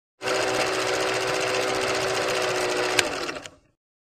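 Film projector sound effect: a fast, steady mechanical rattle with a motor hum, a sharp click about three seconds in, then a quick fade out.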